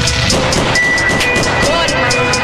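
Hip-hop and dancehall club DJ mix playing with a steady beat, ticking about four times a second. The bass comes back in at the start after being cut out.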